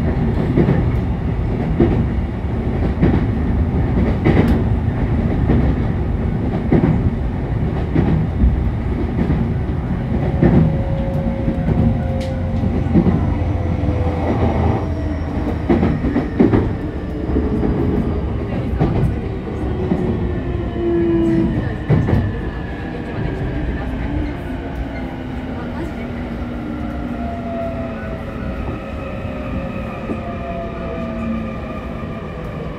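Running noise inside a JR E531 series electric commuter train's motor car as it brakes for a station: wheels clicking over rail joints over a steady rumble. From about ten seconds in, the traction motors' whine slides down in pitch as the train slows from about 70 to about 20 km/h, and the whole sound gets quieter in the last third.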